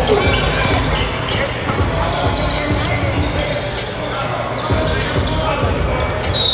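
Basketball dribbled on a hardwood gym floor, repeated bounces in a large echoing hall, with voices and music underneath.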